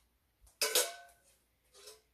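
Stainless steel mixing bowl and utensil clanking, a sharp metallic knock with a brief ring about half a second in, then a second, softer knock near the end.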